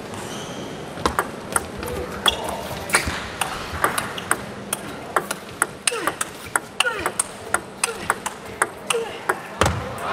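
Table tennis rally: the ball clicks sharply off the rackets and the table in a long, quick exchange of a few hits per second, starting about a second in and stopping shortly before the end.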